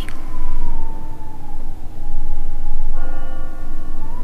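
Dark, ominous film-style sound design: a steady deep rumble under a single high, siren-like tone that slowly falls and wavers. About three seconds in, a short chord of bell-like tones swells in.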